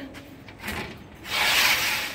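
A brief rubbing, scraping noise, with a faint one about half a second in and a louder one lasting about half a second in the second half.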